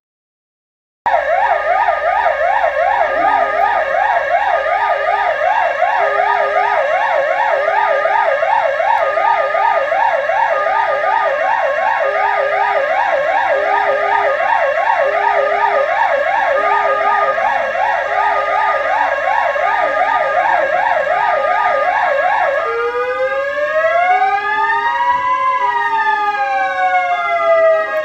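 Ambulance sirens sounding together in a fast up-and-down yelp, starting about a second in, with a lower tone pulsing on and off about once a second. Near the end a slow wailing siren rises and falls.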